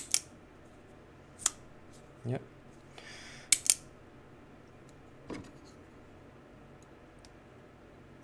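CIVIVI Vision FG folding knife being flicked open and closed by hand: sharp metallic clicks as the blade snaps out and locks, and as it shuts. The clicks come as a pair at the start, a single one about a second and a half in, and another pair about three and a half seconds in, just after a brief swish.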